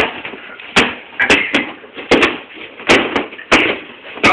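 Pillows landing blows in a pillow fight: a quick run of six or seven sharp hits in four seconds, at uneven intervals.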